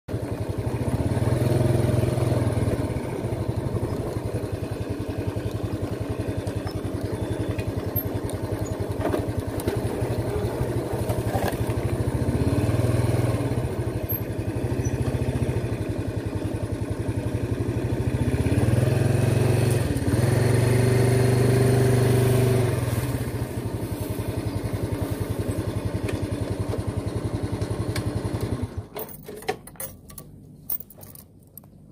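Yamaha motor scooter engine running as it is ridden, revving up and easing off several times, then stopping abruptly shortly before the end.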